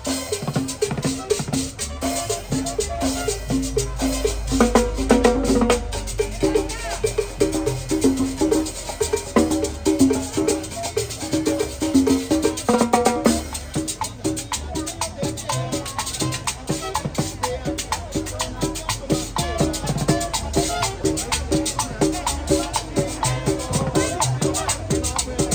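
Latin dance music played live by a street band, with drums and cymbals keeping a steady, repeating beat under pitched melody notes.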